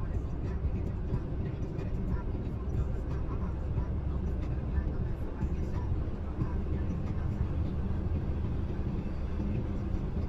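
Steady road and tyre noise with engine hum, heard from inside a car's cabin at highway speed.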